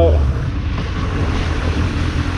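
A 2001 Suzuki Bandit 600's inline-four engine running steadily at low revs, a low, even drone.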